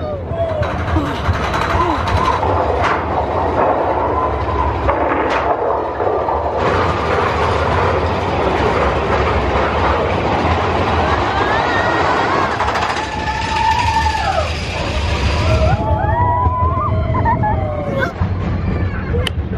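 Mine-train roller coaster cars running along the track with a steady rumble and clatter, getting louder and fuller about six seconds in. Riders' voices rise over it a few seconds before the end.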